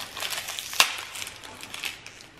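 Crinkling and crackling of a small pink plastic wrapper being pulled open by hand, with one sharper crackle a little under a second in.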